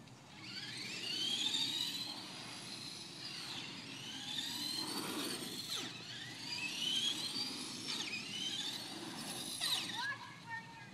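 Brushless electric motors of two Traxxas Stampede VXL RC monster trucks whining, the pitch rising and falling again and again as the trucks speed up and slow down, with a couple of sharp drops in pitch.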